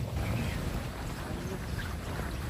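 Wind buffeting an outdoor microphone: a steady low rumble.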